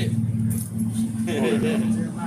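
Steady low drone of a running motor, with faint voices about a second and a half in.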